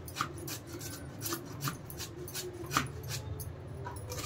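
Pumpkin being grated by hand on a metal grater: repeated short rasping strokes of flesh scraped across the blades, about two or three a second, over a low steady hum.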